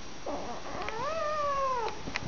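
A tabby cat meowing once, a long drawn-out meow that rises a little and drops in pitch at the end.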